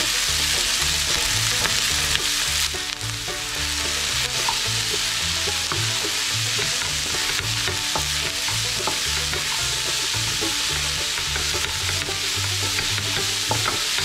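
Chopped vegetables (cabbage and carrot among them) sizzling in a frying pan, turned over and over with a wooden spatula that scrapes and taps the pan.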